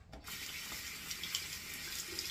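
Bathroom sink tap running: a steady rush of water into the basin that starts a moment in.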